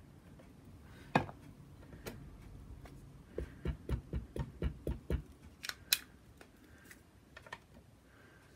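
A small ink pad dabbed repeatedly against a rubber stamp mounted on a clear acrylic block: a quick run of about eight soft taps lasting under two seconds, with a few sharper plastic clicks of the block before and after.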